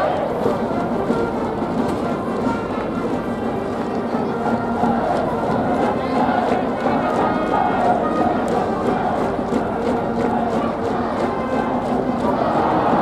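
A school brass band playing a cheering tune in a stadium, over a large crowd of students shouting along.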